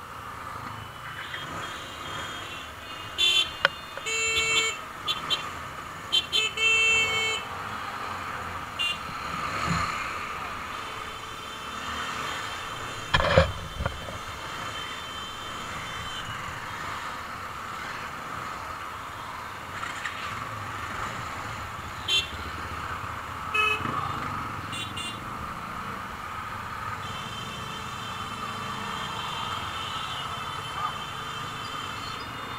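Vehicle horns honking in heavy motorcycle traffic over a steady bed of engine and road noise: a cluster of loud horn blasts a few seconds in, a sharp loud knock near the middle, and a few short toots later on.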